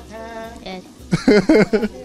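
Conversation: people talking, with a short spoken 'evet' about a second in, after a brief held voiced tone at the start.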